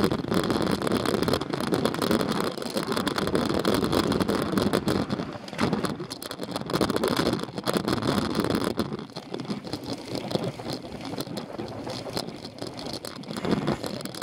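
Noisy rush of a road bike ride heard from a bike-mounted camera, with motor traffic around it. The rush is louder at first and eases off from about nine seconds in.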